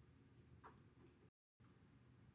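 Near silence: faint room tone with a low hum, one faint tick a little after half a second in, and a brief dropout to total silence past the middle.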